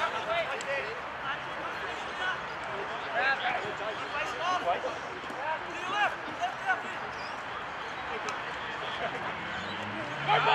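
Distant, overlapping shouts and calls of players across an Australian rules football ground, over steady outdoor background noise.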